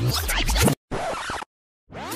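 Record-scratch effect in edited background music, chopped into short bursts. There is a brief gap, then one shorter, duller burst about a second in, and the sound cuts off to dead silence near the end.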